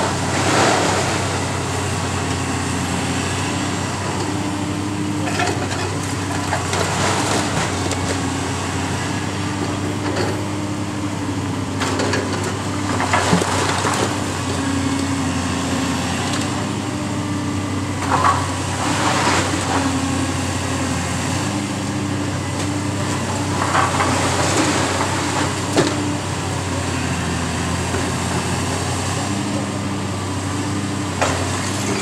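Caterpillar high-reach demolition excavator's diesel engine running steadily, its pitch shifting as the arm works. Over it come repeated crashes and crunching of brick and masonry breaking and falling as the building is torn down, louder about a second in, near 7, 13, 18 and 25 seconds.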